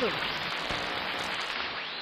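Steady hiss of signal static, the sound effect of a broadcast link breaking down.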